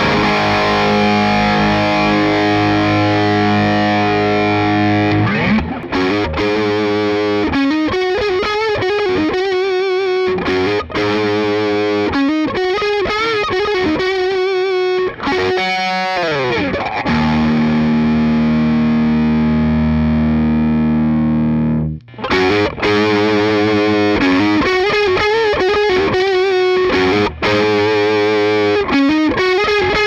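Distorted electric guitar through the overdrive channel of a SonicTone Half Pint tube amp: a held chord, then lead lines with string bends and vibrato, a long held chord that cuts off about 22 seconds in, then more riffing. The amp's negative-feedback switch is on its smooth setting (more feedback) before that break and on punchy (less feedback) after it.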